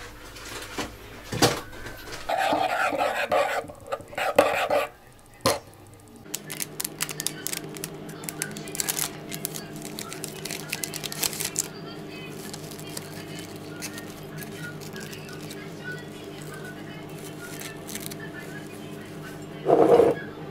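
A spoon and crockery clicking and clinking in a rapid run of small clicks for several seconds, over a steady hum.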